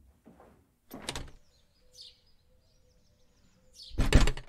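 A door being opened and then pulled shut, the shut the loudest sound, right at the end.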